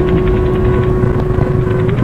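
Cinematic sound-design rumble for a studio logo outro: a dense low rumble under a steady held tone that cuts off just before the end, with faint rapid ticking above.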